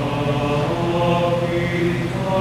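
Mixed choir of men and women singing a sacred song in slow, held chords.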